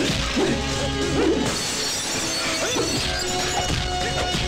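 Action-film background score with fight sound effects laid over it: crashing and shattering hits, the loudest in the first second and a half.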